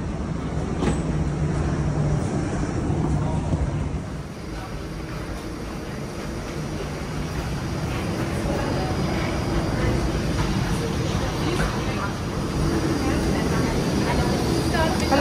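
Steady low rumble and hum of an airport jet bridge walkway beside a parked jet airliner, with a faint high whine running through it and a few faint voices. The sound changes abruptly about four seconds in.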